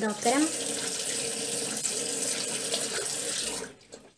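Water running steadily from a bathroom sink tap into the basin, shut off abruptly near the end.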